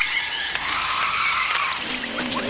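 Cartoon sound effect of a surfboard sliding down a curved rock face: a long, squeaky scraping screech like a skid.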